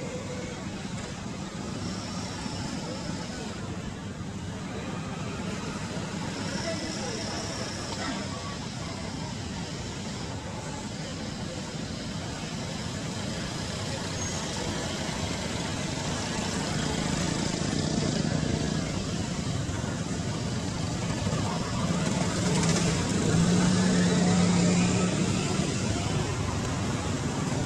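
Steady outdoor background noise with a low, engine-like hum that grows louder over the last few seconds, as of traffic passing.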